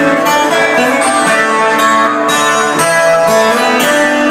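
Loud music played by a DJ over a nightclub sound system: a closing song with sustained chords and no break.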